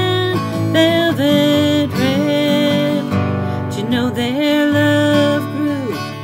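A woman singing a country song to her own strummed acoustic guitar, holding long notes.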